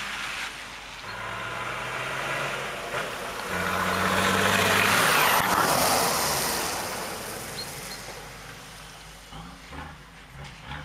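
Nissan Patrol 4x4 engine driving past, its pitch stepping up as it accelerates. The engine and tyre noise swell to a peak about five seconds in, then fade away.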